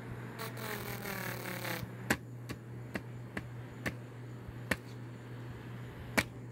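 Small rechargeable USB desk fan running on high with its cover off, the motor humming steadily while its plastic blades hit a fingertip held against them. About half a second in there is a second-long rubbing scrape that rises in pitch, then a string of sharp ticks, roughly one every half second, as blade tips strike the finger.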